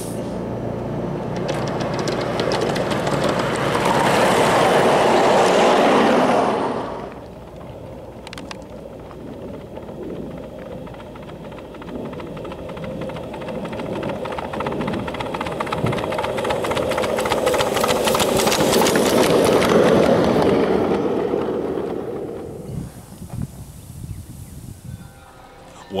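Ride-on 1-inch-scale miniature train running along its track, its wheels clicking rapidly on the rails. It grows louder as it comes close, drops away suddenly about seven seconds in, then builds again to a second close pass around twenty seconds in before fading.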